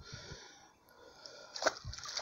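A hooked fish splashing at the water's surface beside a landing net: a sharp splash about one and a half seconds in, then another near the end, after a quieter stretch.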